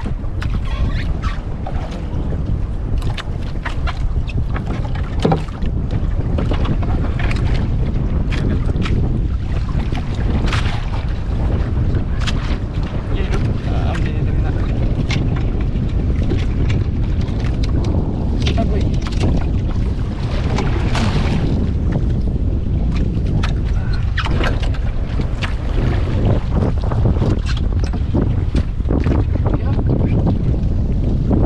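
Steady low rumble of wind buffeting the microphone aboard a small outrigger boat in rough weather, with scattered sharp clicks and knocks throughout.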